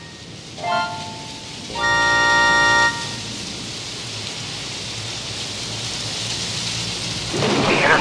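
Old radio receiver being tuned in: a brief whistle, then a louder buzzing tone held for about a second, then static hiss that slowly grows louder until a voice comes through near the end.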